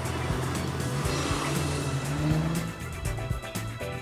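Alfa Romeo SZ's 3-litre Busso V6 driving by, its note rising as it accelerates and then fading, under background music with a steady beat.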